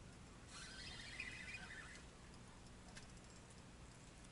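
A spinning reel being cranked in one short burst of faint, rattling whirring, winding in line on a rod bent under a heavy snag.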